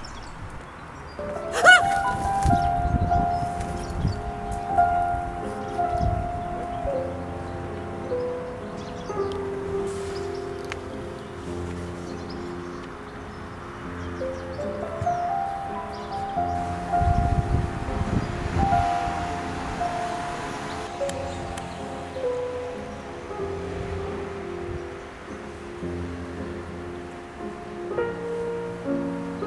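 Slow instrumental music of long held notes, a melody stepping between them. A sharp loud sound cuts in just under two seconds in, and bursts of rustling noise rise under the music near the start and again about halfway through.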